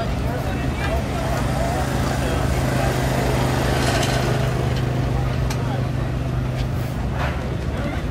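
An engine running steadily at idle, a low even hum, with voices and a few sharp clicks over it.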